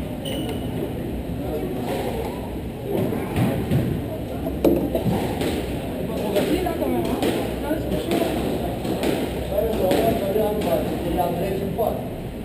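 Sharp knocks of a squash ball being struck by racket and hitting the court walls, at uneven intervals of roughly half a second to a second, over a murmur of voices in a large hall.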